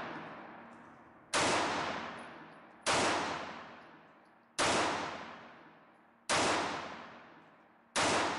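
Smith & Wesson Model 915 9mm pistol, on its factory 14-pound recoil spring, firing slow, evenly spaced single shots, about one every one and a half seconds: four shots, and a fifth right at the end. Each shot is a sharp crack followed by a long echoing fade in the indoor range lane.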